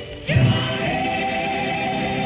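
Sung radio station jingle: a vocal group holds long chords over music, starting a new chord about a third of a second in.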